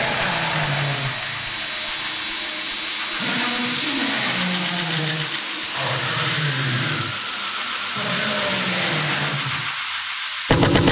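Drumless breakdown in an aggressive electronic bass track. Low synth tones glide up and down about once a second over a steady hiss.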